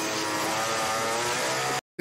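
Chainsaw engine running steadily at high speed, then cut off suddenly near the end.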